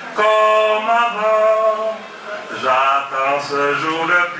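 A man singing a French love song into a handheld microphone, holding long notes in two phrases with a short break about two seconds in.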